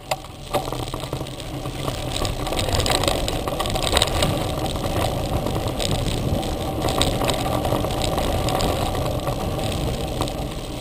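Mountain bike rolling fast over a dirt trail: a steady rumble of knobby tyres on dirt mixed with wind rush, picked up by a handlebar-mounted camera. It builds over the first few seconds as the bike speeds up, with occasional sharp rattles and knocks from the bike over bumps.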